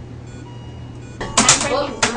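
Steady low electrical hum of medical equipment with a few faint, short electronic tones, then a woman's voice starts near the end.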